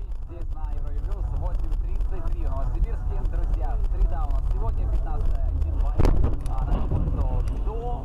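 Low rumble of a moving car, with voices talking over it throughout and one sharp knock about six seconds in.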